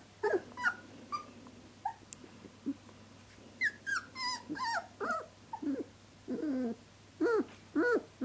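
Three-week-old puppies whimpering: a string of short, high cries that fall in pitch, coming thickest a little after the middle, with lower, longer whines near the end.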